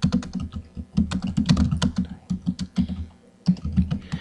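Typing on a computer keyboard: a quick, uneven run of key clicks, with a short pause a little after three seconds before the clicks resume.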